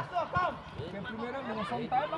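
Indistinct voices of players and onlookers calling out at an outdoor amateur football match, with no clear words, and a couple of short knocks near the start.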